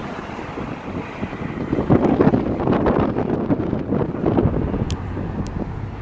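Wind buffeting a phone microphone in a moving car, strongest in the middle seconds, over steady road noise from the car.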